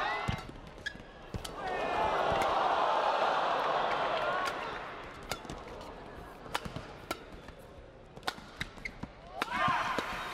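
Badminton rally: sharp racket hits on the shuttlecock, coming thick and fast in the second half, with short squeaks of court shoes near the start. An arena crowd murmurs for a few seconds early on.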